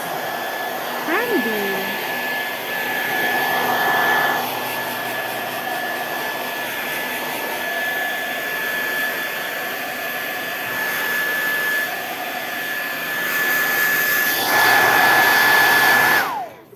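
Gaabor GHD N700A hair dryer running steadily: rushing air with a constant high whine, louder for a moment about four seconds in and again near the end as it is swung closer.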